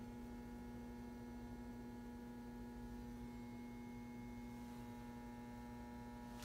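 Faint, steady electrical hum: one low tone with fainter higher tones above it, unchanging throughout.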